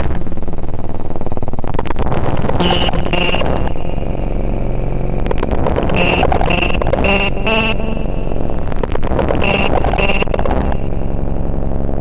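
Dense, noisy electronic music: a steady low drone under clusters of harsh, buzzing bursts. The top end cuts out near the end.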